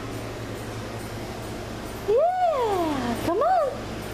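A voice making two wordless swooping calls: one long call, about two seconds in, that rises and then slides far down, and a shorter rise-and-fall call soon after.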